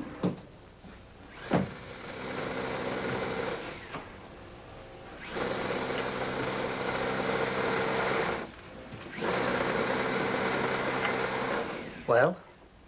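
Electric sewing machine running in three stretches of a few seconds each, stopping and starting with short pauses. Two sharp clicks come just before the first run.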